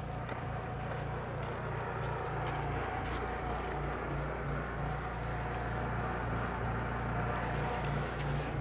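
An engine running steadily with a constant low hum and no change in level.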